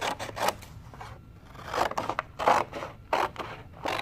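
Scissors snipping through thin manila file-folder card in a run of short, irregular cuts along a traced line.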